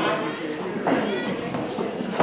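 People's voices, with short high-pitched cries from a young child.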